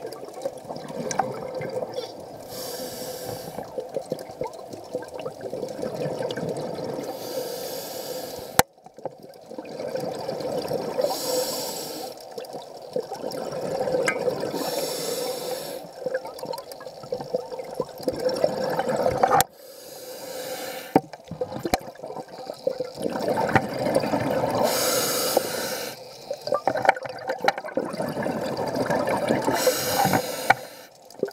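Scuba diver breathing through a regulator underwater: a hissing inhale every four seconds or so, each followed by a long bubbling exhale. Two sharp clicks stand out, about 9 and 19 seconds in.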